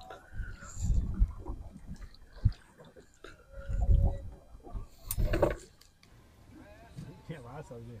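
Irregular knocks and thumps of someone moving about on a boat deck, the loudest a clatter about five seconds in.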